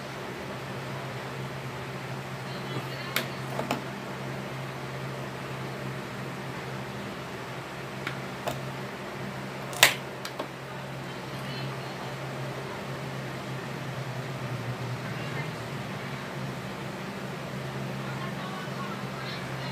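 A few sharp clicks and knocks of pliers and small tools handled at the wires of a rice cooker's thermal fuse, the loudest just before ten seconds in, over a steady low hum.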